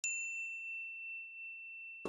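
A single high bell-like ding, struck once at the start and left to ring, its bright overtones dying away within about half a second while the main tone fades slowly.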